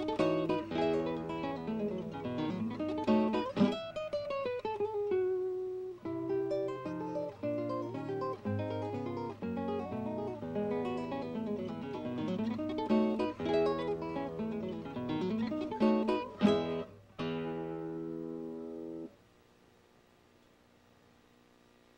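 Solo classical guitar with nylon strings, played fingerstyle: plucked melody and chords, with a note sliding down in pitch about four seconds in. Near the end come a couple of sharp strummed chords, and a final chord rings for about two seconds before it is cut off.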